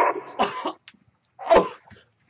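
A man's short coughing grunts and gasps, twice, as he acts out being shot in the chest.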